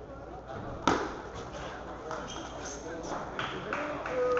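Table tennis ball being played in a rally: a sharp crack of the ball about a second in, the loudest sound, then a run of lighter clicks of ball on bat and table, coming faster near the end, over background voices in the hall.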